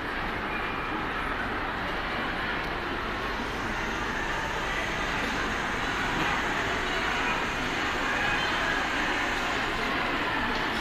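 Steady background noise of a large hall, with no distinct clicks or knocks.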